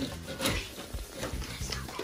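Scattered light clicks and knocks from plastic cups and a syrup bottle being handled at a counter, under faint background voices.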